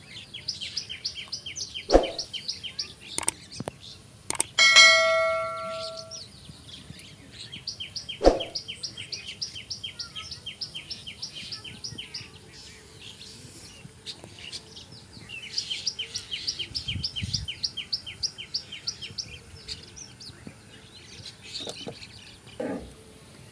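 A bird sings fast chirping trills, about ten high chirps a second, in three runs of a few seconds each. Two sharp knocks come about two and eight seconds in, and a single ringing metallic ding dies away about five seconds in.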